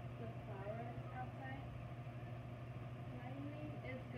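Faint, indistinct voice speaking softly over a steady low hum in a classroom.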